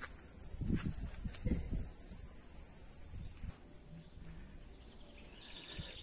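Low rumble of wind and handling noise on a phone microphone, with a few soft knocks in the first couple of seconds. A faint steady high hiss stops about three and a half seconds in, leaving quiet outdoor ambience.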